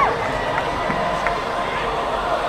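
A held sung note falls away at the very start, leaving a rock concert crowd cheering and shouting.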